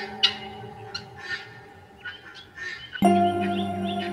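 Relaxing harp music dying away on a held chord, with gulls calling several times over it. About three seconds in, a new harp chord is plucked.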